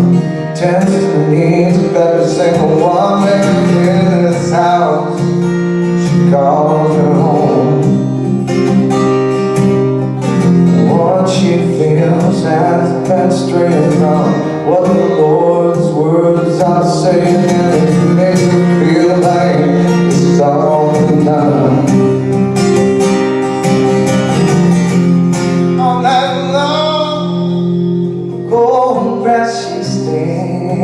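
Acoustic guitar strummed steadily, with a man singing a country-folk song over it.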